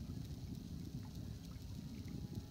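Low, steady rumble of wind and water around a small sailboat running under an electric motor, with a faint thin hum coming in near the end.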